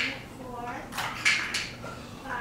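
Sniffing and breathy exhales as two people wipe their streaming eyes and noses with cloth napkins after eating very hot chili chocolate, with a brief faint vocal sound. There are several short breathy strokes about a second in.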